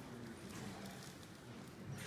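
A few faint, soft knocks over a low room hum.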